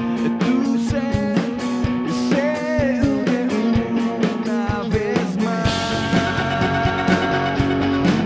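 Live rock band playing: a male lead vocal over electric guitar, bass guitar and drum kit. The singing stops about five and a half seconds in, leaving held guitar chords and drums.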